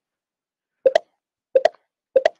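Chat notification sounds: two short two-note pops, about half a second apart, each marking a new message arriving in the live chat.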